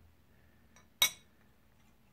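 An aluminium flat pedal with a titanium axle set down on the glass top of a digital kitchen scale: a single sharp metal-on-glass clink about a second in.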